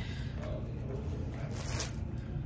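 A brief rustle of wig hair being handled, about three-quarters of the way in, over a steady low hum.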